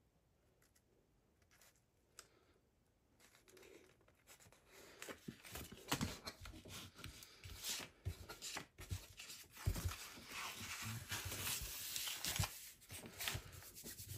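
A hand rustling and rubbing a paper sheet as it is pressed and smoothed down onto chipboard. The quiet, irregular scrapes and rustles start about three seconds in and become a steadier rubbing near the end.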